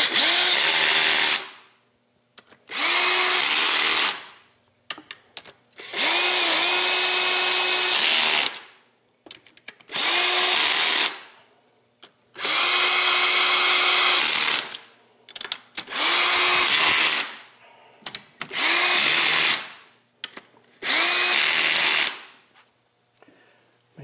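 Power drill with its clutch set low, driving valve cover bolts down in eight short runs. Each run spins up to a steady whine and stops, with a pause between bolts.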